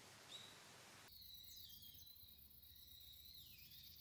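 Faint outdoor ambience with a couple of short rising bird chirps. About a second in it changes abruptly to a quieter background with high, thin whistling calls that slide up and down in pitch.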